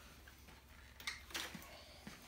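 Quiet room tone with a few faint clicks from the folded bicycle being handled, about a second in.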